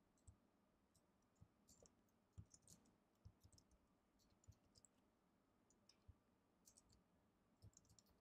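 Faint, irregular clicking of a computer keyboard as code is typed and edited, against near silence.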